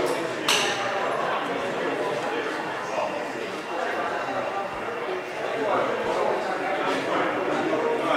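Indistinct chatter of people talking in a large, echoing indoor hall, with a single sharp click about half a second in.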